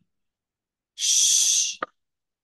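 A person's voice making one hushing 'shh', under a second long, about a second in: the 'Ssh' read aloud from the exercise sentence. A brief click-like sound follows just after it.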